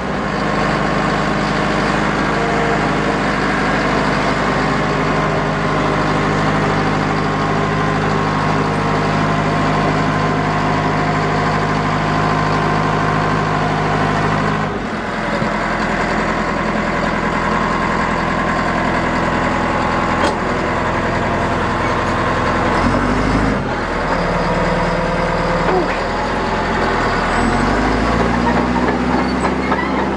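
Caterpillar 3304 four-cylinder diesel engine of a D4H-LGP crawler dozer running steadily. Its note drops and changes about halfway through, then rises in pitch near the end as the engine speeds up.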